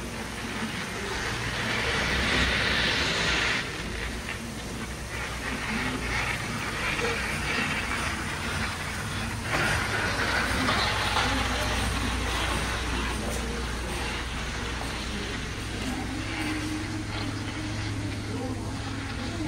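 Service workshop ambience: a steady low hum under a hissing noise that swells for a few seconds near the start and again about ten seconds in, with voices in the background.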